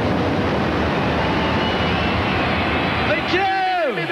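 A TV channel transition sting: a dense, steady roar of noise, then about three seconds in an electronic swoop whose pitch falls quickly.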